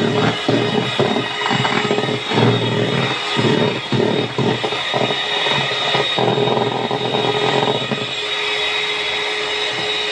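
Electric hand mixer running steadily, its beaters whipping egg whites with sugar in a plastic bowl, with irregular clatter from the beaters against the bowl.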